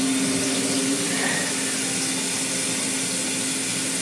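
Shower water running as a steady hiss, with a steady low hum under it that drops slightly in pitch about a second in.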